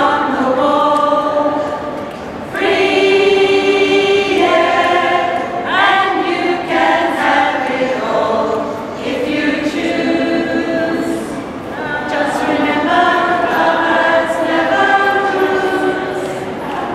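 A choir of mixed voices singing together in harmony, in phrases of long held notes with short breaks between them.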